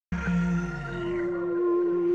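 Short musical intro sting of long held tones, a few of them sliding downward in pitch, starting abruptly.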